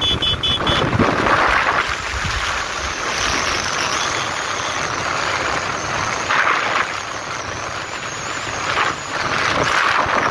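Wind rushing over the microphone of a moving vehicle, with road noise underneath, surging in gusts a few times. A quick row of short high beeps is heard right at the start.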